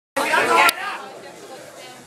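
A voice speaking loudly for about half a second just after the start, cut off abruptly, then quieter chatter of people in a hall.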